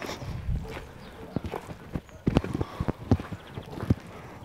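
Footsteps on a path of dry leaves and frozen ground dusted with graupel: a run of short, irregular crackling steps, closest together in the middle.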